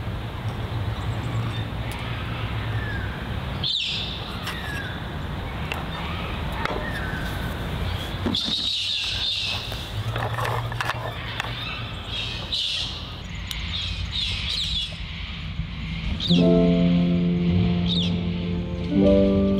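Outdoor ambience with birds chirping and calling throughout. About two seconds before the end, background music comes in with steady held notes.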